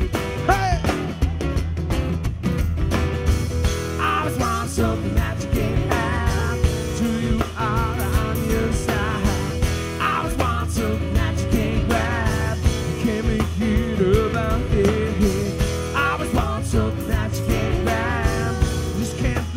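Live blues-rock band playing with a steady beat: drum kit and cymbals under guitars, with wavering melodic lines on top.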